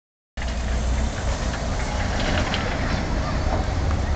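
Tracked excavator's diesel engine running steadily at a distance, a low rumble, with a few faint knocks about halfway through.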